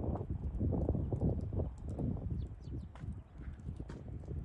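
Footsteps crunching through deep snow at a walking pace, about two steps a second, growing fainter after the middle.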